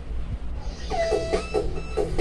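Music from a television commercial, heard through the TV's speaker: a short quieter gap with a low hum, then a jingle of held tones and short notes starting about a second in.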